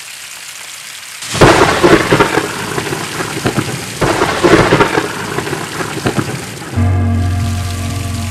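Heavy rain hissing, broken by thunder: a loud crash about a second and a half in and another about four seconds in. A low, steady music drone comes in near the end.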